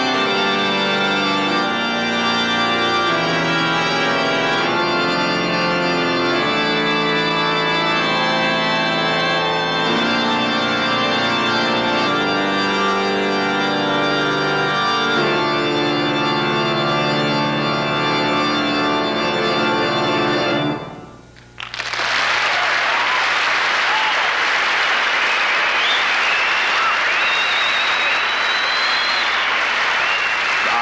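Rodgers touring electronic organ playing sustained chords and moving lines, which break off abruptly about 21 seconds in. The audience then applauds, with some whistles.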